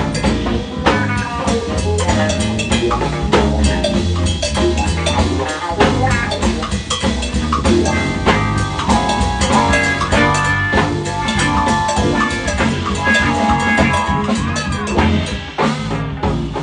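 Live band jamming: electric guitar playing held and bending notes over a busy drum kit.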